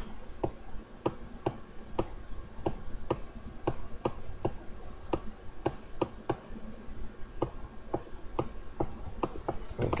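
Computer mouse button clicking repeatedly, about two to three short clicks a second at uneven spacing, as the Photoshop Liquify brush is pressed and released in short push strokes.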